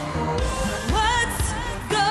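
Electro-pop dance song performed live, a woman singing over a steady beat, with a held, wavering sung note coming in about a second in.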